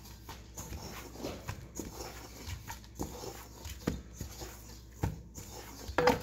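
Hands squeezing and folding stiff chocolate cookie dough in a stainless steel bowl: irregular soft squelches with scattered knocks against the metal, a couple louder near the end.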